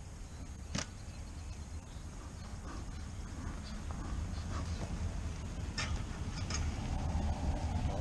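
Bee smoker puffed at a beehive and the wooden hive lid handled and lifted off, giving a few sharp clicks and knocks about a second in and near six seconds, over a steady low rumble that slowly grows louder.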